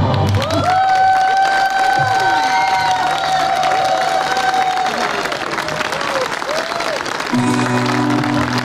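Audience applauding and cheering as a song ends, with one long whistle held for about four seconds and a few short rising-and-falling whistles after it. Near the end the band starts a steady guitar and keyboard chord.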